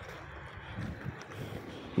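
Faint outdoor background noise: distant road traffic with some wind on the microphone.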